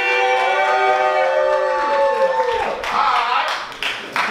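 Voices holding a long, high cheer for about two and a half seconds that trails off, followed by clapping and a laugh near the end.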